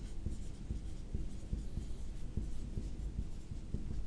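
Marker pen writing on a whiteboard: a quiet run of short, irregular strokes as a word is written out.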